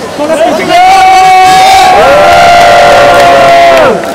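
Excited people's voices greeting someone with a long, loud, high-pitched held shout of joy that starts about a second in, with a second voice joining halfway through; both fall in pitch and cut off near the end.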